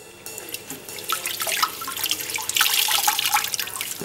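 Water splashing and trickling in a plastic bucket as a hand works in it, growing louder from about a second in.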